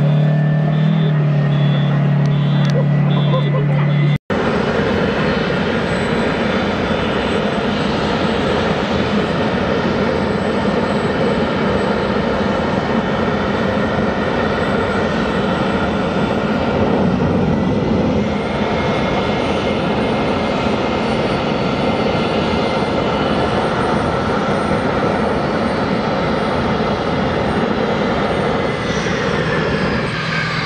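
English Electric Lightning's twin Rolls-Royce Avon turbojets running on the ground: a steady jet roar with a high whine. A sudden cut a little over 4 s in replaces a strong low hum with that roar, and near the end the whine begins to fall in pitch.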